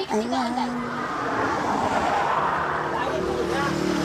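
A vehicle passing on the concrete road. Its tyre and engine noise swells to a peak about two seconds in, then fades.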